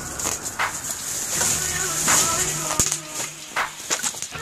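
Plastic garbage bags rustling and crinkling as they are pulled and pushed around by hand, with sharp crackles scattered throughout.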